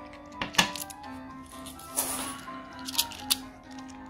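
2 euro coins clicking as they are set down on a wooden table and handled: four sharp clicks, the loudest about half a second in, over background music.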